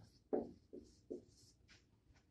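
Dry-erase marker writing on a whiteboard: three short strokes in quick succession within the first second or so, then a few fainter ones.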